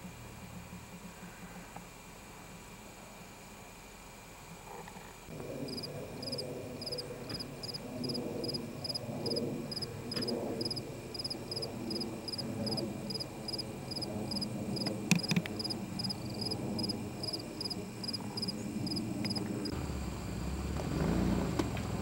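Cricket chirping steadily, about three chirps a second, starting about six seconds in and stopping suddenly near the end, over a low outdoor rumble, with one sharp click partway through.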